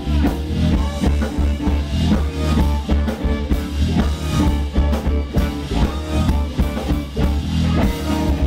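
Live funk band playing a steady groove: drum kit, electric guitars and bass, with the music in a club room.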